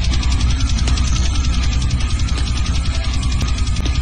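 Loud, heavily distorted meme soundtrack: a fast, even rattle over a deep steady bass.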